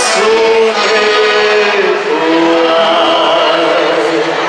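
Live gaúcho folk dance music: a sung melody with long held notes over band accompaniment.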